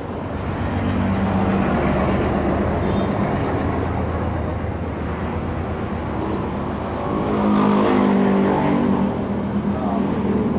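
A motor vehicle's engine running, a steady low hum that gets louder about seven seconds in.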